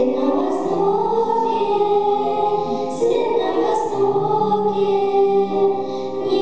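Three young girls singing a song together into microphones, amplified through a sound system, with long held notes, over a lower sustained accompaniment.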